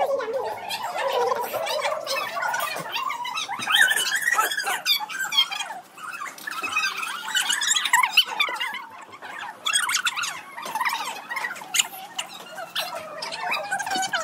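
Children's voices talking and calling out in the background, with no clear words.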